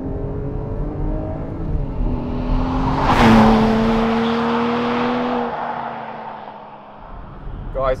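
Porsche 718 Cayman GTS 4.0's naturally aspirated 4.0-litre flat-six pulling. About three seconds in the car passes close by with a loud rush, and its engine note then fades as it drives away.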